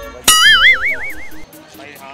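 A comedy sound effect added in editing: a sharp pluck, then a loud wobbling tone that warbles for about a second and cuts off suddenly, over background music with a steady beat.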